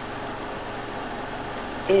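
Steady background hum and hiss with nothing standing out from it, ending as a voice resumes.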